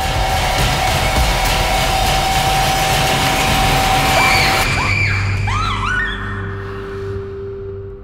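Horror trailer score: a loud, dense swell of noise and a held tone that cuts off sharply about four and a half seconds in, followed by a few swooping pitch glides and a low drone that fades out.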